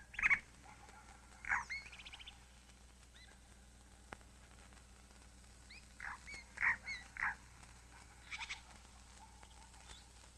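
Short bird calls in a few scattered groups, with faint high chirps between them.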